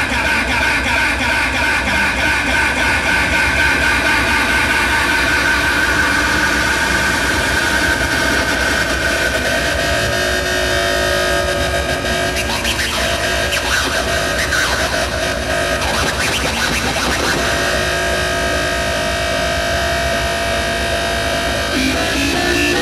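Hardstyle dance music played loud over a club sound system and picked up on stage, with long held synth notes over a dense low end. The held notes change about halfway through.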